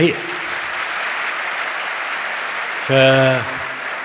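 Audience applauding steadily, with a man's voice speaking briefly over the applause about three seconds in.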